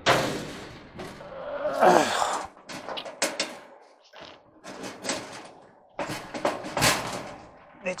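Needle-nose pliers clinking and knocking against a tight wire terminal and the sheet-metal dryer cabinet while the terminal is being worked loose. There is a sharp knock at the very start, then scattered metallic clicks and rattles.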